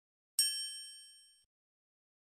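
A single bright, bell-like ding sound effect, struck once about half a second in and ringing away over about a second.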